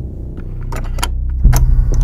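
Low, steady trailer-style rumble with a few sharp clicks, then a sudden deep hit about one and a half seconds in.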